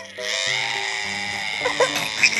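Toddler letting out one long, high, whining cry lasting about a second and a half, then a few short sobbing bursts near the end.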